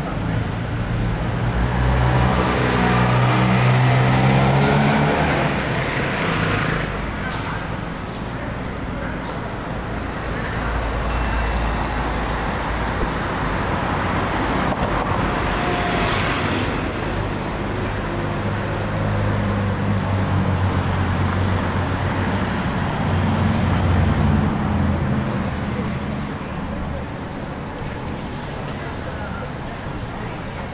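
Street traffic: cars driving past at low speed on a narrow town street, engines and tyres growing louder as each passes, with the loudest passes about 2 to 5 s in and again from about 14 to 25 s.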